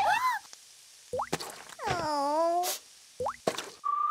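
Cartoon sound effects and a cartoon character's wordless vocal cries: a short swooping call, two quick rising zips, and a wavering wail in the middle. A whistled melody begins just at the end.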